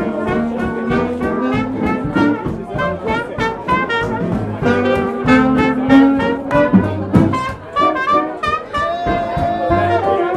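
Small live hot-jazz band playing an up-tempo swing number, with a brass lead line over drums keeping a steady beat on cymbal and snare.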